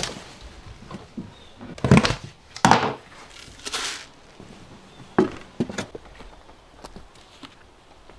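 Footsteps on a wooden deck and a plastic bucket being picked up and handled: a series of knocks and thunks, the loudest about two seconds in, with a short scraping rustle near four seconds and lighter knocks after.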